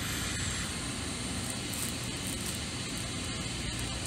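Steady, even hiss of room noise with no distinct event.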